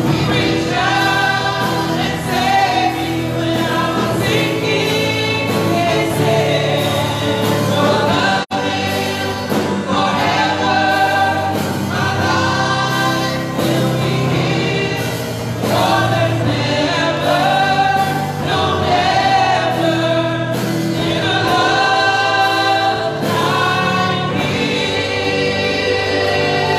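Church worship team of several singers, mostly women, singing a gospel worship song together into microphones. The sound cuts out for a split second about eight seconds in.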